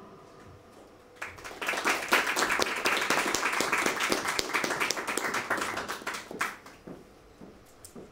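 The end of a song dies away, and about a second later an audience breaks into applause. The clapping holds for around five seconds, then thins out to a few scattered claps near the end.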